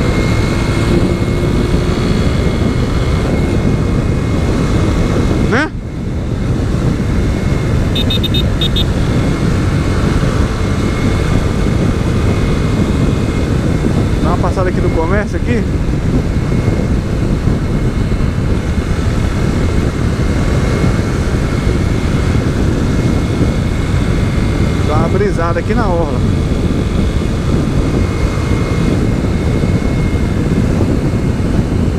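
Steady rush of wind and road noise on the microphone of a motorcycle riding at speed, with the bike's engine running underneath. The loudness dips briefly about five and a half seconds in.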